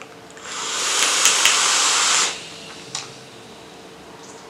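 Two electronic cigarettes with dripping atomizers being drawn on hard: a long hiss of air rushing through the atomizers, with faint crackles from the heated coils, that builds for about two seconds and then stops sharply.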